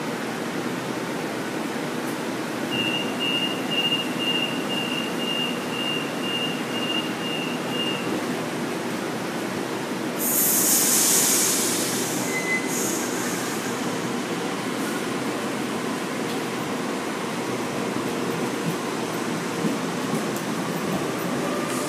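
Sydney Trains Waratah electric train at the platform with its equipment running: a door-closing warning beeps about twice a second for around five seconds, then a loud burst of air hiss comes about ten seconds in, and the train starts to move off.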